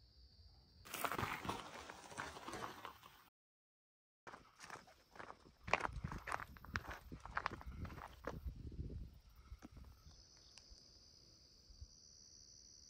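Footsteps crunching and clicking over gravel and loose rock, with a steady high insect trill at the start and again near the end. A brief dead-silent gap comes about three seconds in.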